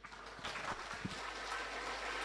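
Audience applauding in a hall. The clapping starts faintly about half a second in and swells.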